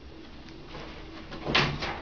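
Handbags being handled: rustling and shuffling as one bag is put down and another is picked up, faint at first and louder in the second half.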